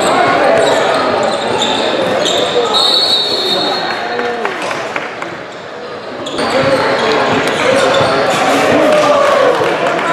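Live game sound in a basketball gym: a ball bouncing on the hardwood as it is dribbled, sneakers squeaking, and a hall full of voices chattering and calling. It softens briefly in the middle, then picks up again.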